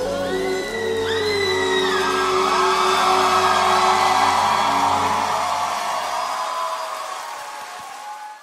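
Closing bars of a Latin pop ballad: held notes with a sliding, wailing vocal line. The song fades out over the last few seconds.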